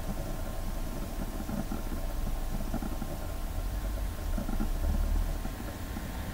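A steady low rumble of background noise, swelling slightly about four seconds in.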